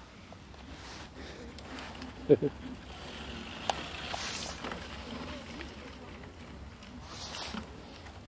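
A mountain bike passing close over a sandy track, its tyres hissing through the sand for a moment about four seconds in, with a brief loud voice call a couple of seconds before.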